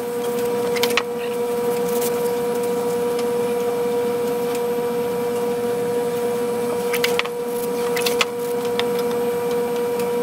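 Steady machine hum with a constant mid-pitched tone. A few light clicks of handling come about a second in and again around seven and eight seconds in.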